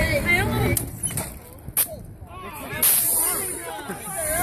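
A few sharp clicks, then about three seconds in a sudden burst of compressed air hissing out of the robot's pneumatic launcher.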